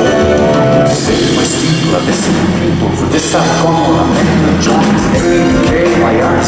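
Live progressive rock band playing a loud, dense passage, with sustained low notes under repeated sharp strikes.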